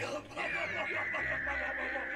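Anime soundtrack playing in the background: a long, high call that falls slowly in pitch, with a rapid pulsing, starting about half a second in.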